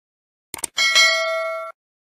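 Two quick clicks, then a bell ding that rings for about a second and cuts off suddenly: the notification-bell sound effect of a subscribe-button animation.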